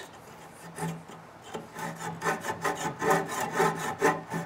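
Small handsaw cutting across the end of a turned hardwood chair leg, making the stop cuts at the edges of the notch for the rocker. The strokes start faint and become regular and louder after about a second and a half, about three strokes a second.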